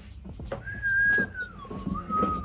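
A woman whistling: one clear high note starting about half a second in, held for about a second, then sliding down to a lower held note.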